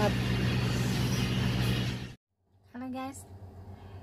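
Young jackfruit stir-fry sizzling in a wok over a steady low hum, cutting off abruptly about two seconds in. This is followed by a brief vocal sound from the cook.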